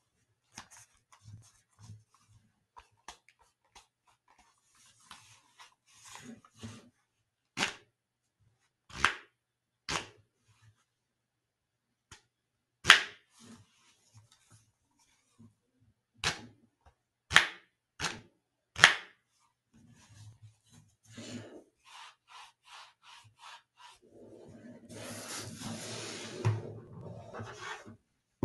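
Plastic gaming headset handled with cotton-gloved hands: a series of sharp plastic clicks, several of them loud, as the headband and ear cups are worked. Near the end a continuous rustling and scraping as the cable and its plugs are handled.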